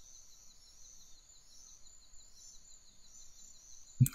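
Faint nature ambience: high, thin chirping repeated several times a second over a low hiss, like a bed of forest insects or small birds.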